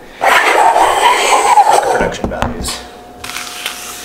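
Handling noise from a camera being moved and set down on a desk: about two seconds of loud rubbing and rustling, then a few light knocks as it settles.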